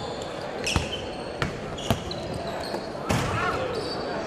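A basketball bouncing on a hardwood gym floor, several separate bounces, over background chatter in a large echoing gym, with short high squeaks in between.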